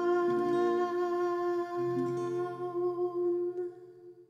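The final held note of a gospel hymn: a woman's voice sustaining one steady pitch over soft accompaniment whose chords shift underneath, fading out near the end.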